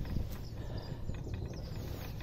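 Canal swing bridge being swung by its handwheel, the deck turning on its roller: a steady low rumble with a few light knocks.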